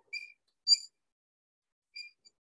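Two short, high-pitched squeaks of writing on the board, the second louder, about half a second apart.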